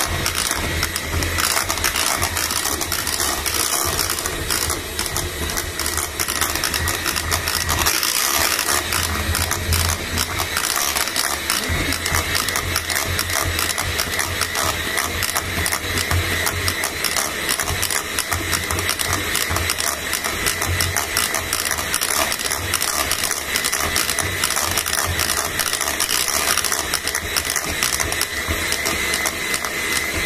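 Electric hand mixer running steadily, its beaters whisking batter and clattering rapidly against the sides of a bowl.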